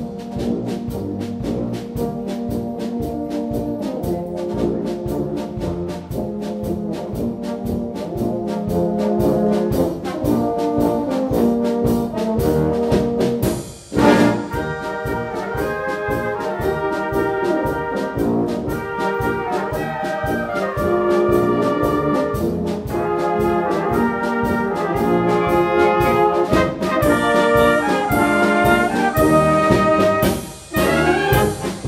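Background music led by brass instruments over a steady beat. About halfway it breaks off for a moment and comes back with a loud chord, and the melody then sits higher.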